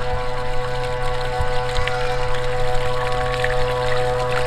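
Large radio-controlled Riva Aquarama model speedboat under way, its motor giving a steady whine of one unchanging pitch over the hiss and splash of water off the hull. It grows slightly louder toward the end as the boat approaches.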